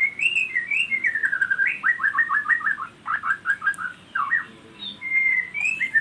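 A songbird singing: whistled notes that slide up and down, followed by a quick run of short repeated chirps, about five a second.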